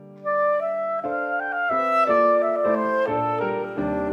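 Clarinet playing a short melodic fill of stepping, held notes over sustained piano chords, coming in about a quarter second in.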